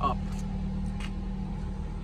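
Steady low hum of a 2020 Nissan Rogue SV's 2.5-litre four-cylinder engine idling after a remote start, heard from inside the cabin.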